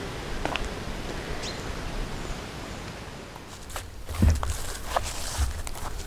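Footsteps on the forest floor, rustling through leaves and undergrowth over a steady background hiss; in the second half come several sharp snaps and a couple of dull thuds as the steps land.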